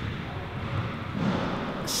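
Low rumbling noise from a handheld camera being swung around, swelling about a second in.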